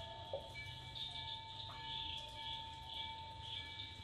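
Quiet room with a faint steady high-pitched electrical whine, and a few faint strokes of a marker drawing on a whiteboard.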